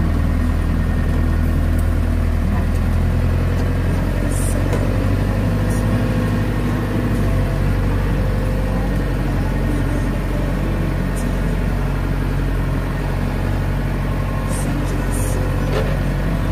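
Four-wheel-drive vehicle's engine running at low speed, heard from inside the cabin as a steady low drone, its note changing about four seconds in.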